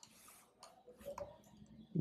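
A few faint, separate computer keyboard key clicks.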